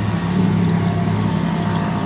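A steady low engine hum, running evenly without change.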